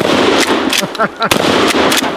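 Two shots from a 12-gauge Mossberg Shockwave pump-action firearm, about a second and a quarter apart, each followed by echo across the range.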